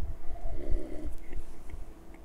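A man drinking beer from a glass, swallowing mouthfuls in dull low gulps, with a few faint clicks of the mouth near the end.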